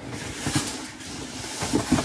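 Cardboard rustling and handling noises from the bike's shipping carton, with a few soft knocks.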